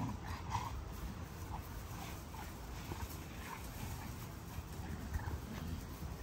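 XL American Bully puppies play-fighting on grass: faint, scattered short growls and yips over a steady low rumble.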